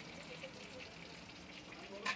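Faint, steady sizzle of food frying on a street-stall fried-rice cart, with fine crackles.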